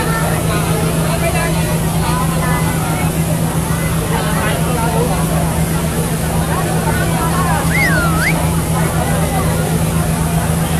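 Steady low drone of a fire truck's engine running close by, under the scattered voices of a crowd of onlookers.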